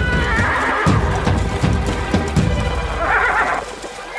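Cartoon horses neighing with a run of hoofbeats, over background music; one short whinny about three seconds in.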